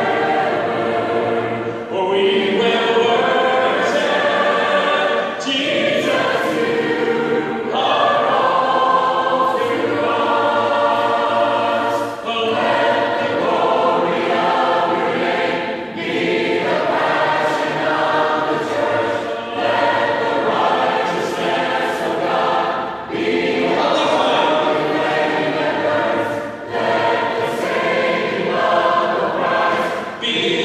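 A group of voices singing a worship song together in harmony, unaccompanied, in phrases a few seconds long with short breaths between them.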